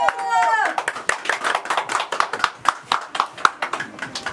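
A small group of people clapping their hands, unevenly and with voices over it. A music track with held notes dies away in the first second.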